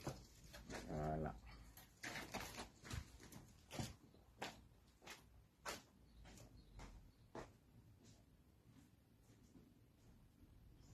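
Faint footsteps: a run of soft taps about every 0.7 s, growing fainter as they move away from the microphone. A short low hum of a man's voice comes about a second in.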